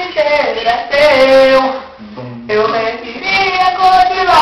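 A man singing a sertanejo ballad, with a short break in the voice about halfway through.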